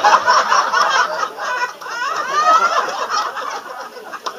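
Loud laughter from a small audience, several voices overlapping, loudest at first and fading toward the end.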